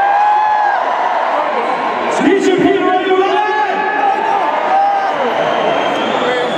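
A man's voice talking amid crowd chatter and occasional shouts.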